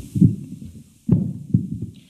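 Microphone handling noise: a live microphone on a stand being grabbed and moved, giving several low thumps and rumbles.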